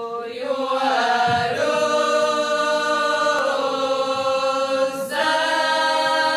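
A small folk ensemble, mostly women's voices, singing a Latgalian folk song unaccompanied in long held notes. The voices move to a new pitch together every second or two.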